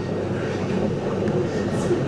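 Steady rushing water noise from a fish-spa tank, with a low steady hum underneath.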